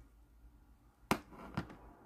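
Cutters snipping off the excess of a model mirror's glued-in pin: two sharp clicks about half a second apart, the first the louder.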